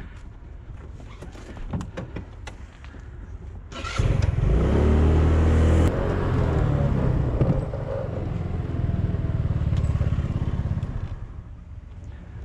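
Gas motor scooter's small engine pulling away under throttle about four seconds in, its pitch rising as it speeds up. It then runs steadily while riding and eases off near the end as the scooter slows. Before it pulls away there are a few light clicks of things being handled.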